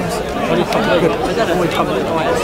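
Several people talking at once, their voices overlapping as crowd chatter.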